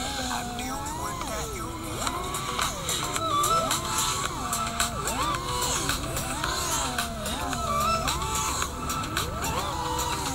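Motors and propellers of a 5-inch FPV freestyle quadcopter in flight, a whine that swoops up and down in pitch about once a second as the throttle is punched and eased through turns and flips.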